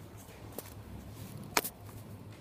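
A faint click about half a second in, then a sharp, loud click with a smaller one right after it near the end, over a steady low hum.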